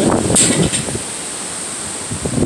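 Strong wind rushing and buffeting the phone's microphone: gusty and uneven in the first second, then a steady rush.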